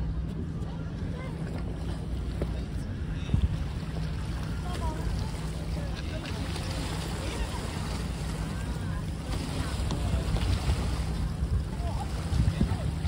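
Small seawater waves washing and lapping against rocky shore, with wind on the microphone and a steady low hum underneath.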